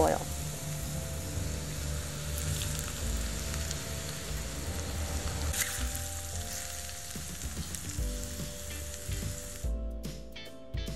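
Hot vegetable oil poured over chili powder, minced garlic, sesame seeds and ground spices in a ceramic bowl, sizzling steadily as it fries them into red chili oil; the sizzle cuts off just before the end.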